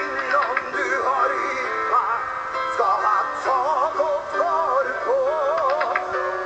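A man singing live into a microphone, holding notes with a wide vibrato, over sustained chords from the backing band.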